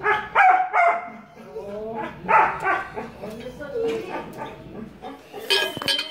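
A shelter dog barking and yelping in short pitched calls, in three bursts about a second and a half apart, with a brief clatter near the end.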